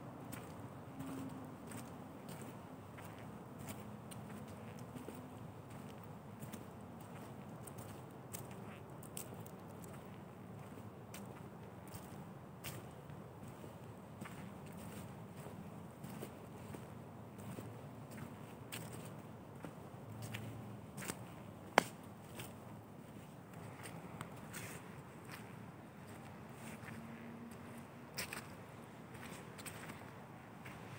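Footsteps along a forest path strewn with dry leaves, with scattered small crackles and ticks and one sharp click about two-thirds of the way in.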